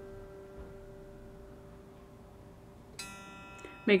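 A single note on a short-scale electric guitar ringing and slowly fading, then a fresh pluck about three seconds in. A string fretted at the 12th is being sounded to check its intonation against the tuner.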